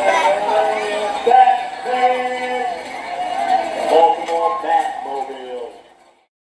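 People's voices with several long held notes that bend in pitch, fading out near the end.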